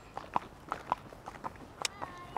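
A horse's hooves clip-clopping at a walk on tarmac: a string of light, uneven hoof strikes, a few a second, one louder strike near the end.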